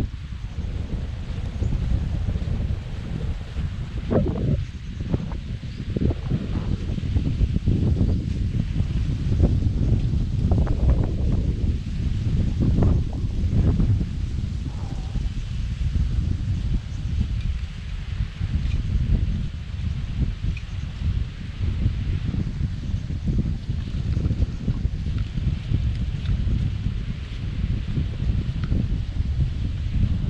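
Wind buffeting an action camera's microphone: a loud, steady low rumble with gusty swells.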